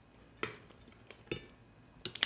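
Two short clinks of eating utensils against a dish, about a second apart.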